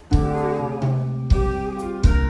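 Jazz quartet playing live: violin, bass guitar, keyboard and drum kit. After a brief break the band comes back in together on a loud accent right at the start, then holds chords over moving bass notes.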